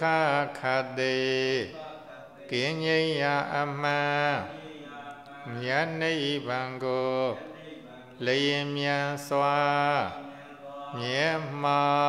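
Burmese Buddhist monk chanting solo into a microphone, a slow melodic recitation in phrases of about two seconds, each held note sliding down at its end, with short breaths between.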